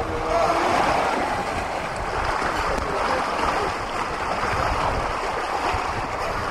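Steady rush of water along the hull of a sailing yacht under way, with gusty wind rumbling on the microphone.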